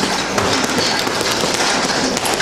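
Boxing-gym noise: a dense, irregular run of rapid smacks, typical of gloves hitting punching bags.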